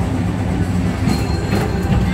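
Tomorrowland Transit Authority PeopleMover car running along its elevated track: a steady low running hum with a few light rattles about a second in, under the ride's background music.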